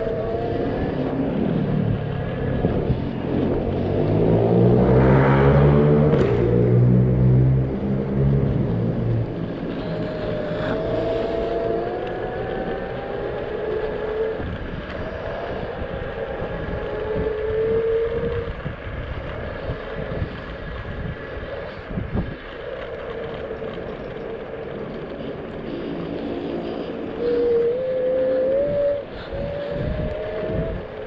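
Electric scooter ridden along a street, with road and wind noise on a chest-mounted action camera and a thin motor whine that rises and falls in pitch with speed. A louder, deeper droning swells from about two seconds in and fades by about nine seconds.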